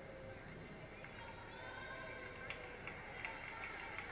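Faint gym ambience from a volleyball broadcast, heard through a TV speaker: indistinct distant voices, with a few light ticks in the second half.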